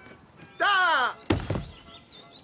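A short pitched sound that falls in pitch, then about a second and a half in a single heavy thunk from a wooden trunk being handled.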